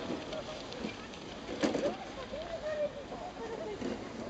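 Children's voices calling and shouting at play, high-pitched and overlapping, with one louder cry near the middle.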